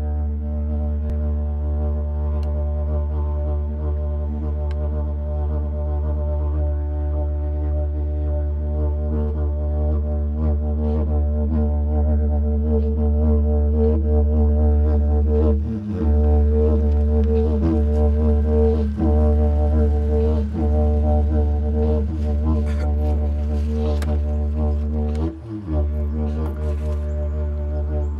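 Didgeridoo playing one steady low drone with shifting overtones, broken briefly twice, a little past halfway and near the end.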